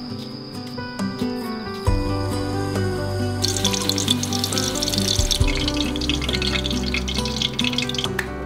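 Background music, and from about three and a half seconds in, breaded cutlets sizzling as they fry in hot oil in a pan.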